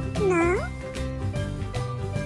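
A Chihuahua × Shih Tzu mix dog gives one short whine-like call of about half a second, its pitch dipping and then rising like a question. Background music with a steady beat plays underneath.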